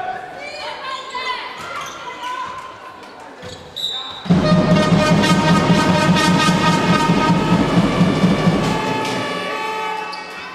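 Handball bouncing on a sports-hall floor among players' calls, echoing in the hall. About four seconds in, loud music with sustained tones and a steady pulse starts and covers the game sounds.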